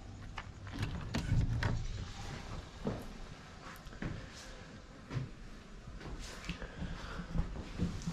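A steel personnel door in a shipping container is unlatched by its lever handle and swung open, with a louder low knock about a second in. Scattered clicks and knocks follow as someone moves inside.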